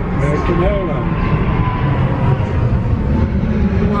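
Steady low rumble and running noise inside a moving Heathrow Terminal 5 electric pod, with a faint steady whine over the first couple of seconds.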